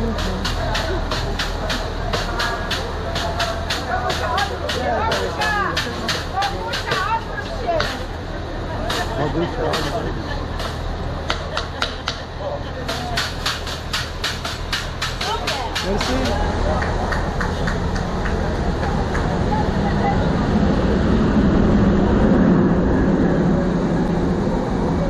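People talking on a railway platform over the steady low hum of a standing train, with frequent sharp taps and clicks through the first two-thirds. A Polregio double-deck train then pulls along the platform, its rumble growing louder toward the end.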